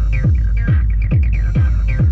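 Dark electronic techno played live on hardware synthesizers and a drum machine: a deep synthesized kick drum whose pitch drops on each hit, about two kicks a second, under short falling synth sounds.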